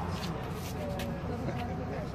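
Faint, indistinct voices over a steady low background noise, between bursts of nearby talk.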